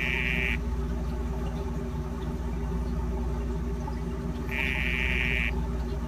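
Male dyeing dart frog (Dendrobates tinctorius) giving its buzzing courtship call to a female, twice: one buzz ending about half a second in, another about a second long starting near the two-thirds mark. A steady low hum runs underneath.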